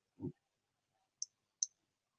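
A quiet pause holding a short, faint low sound near the start, then two faint, sharp clicks about half a second apart in the second half.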